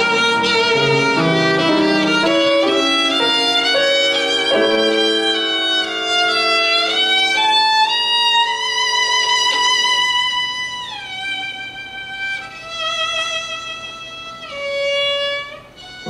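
Violin playing a melody over grand piano accompaniment. About ten seconds in, the piano's low notes fall away and the violin goes on more quietly in long, held notes.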